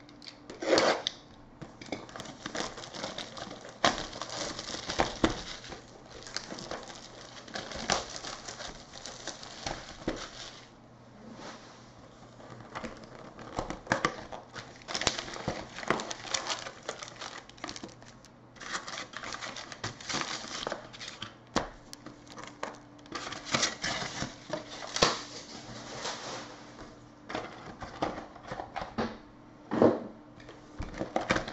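Trading card boxes and packs being opened and handled by hand: cardboard rustling and tearing and card packs crinkling, broken by irregular taps and clicks, with a few short quieter pauses.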